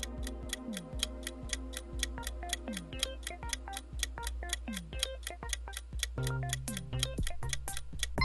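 Countdown-timer clock ticking, about four ticks a second, over a soft music bed, marking the time left to answer a quiz question; a low steady tone joins about six seconds in.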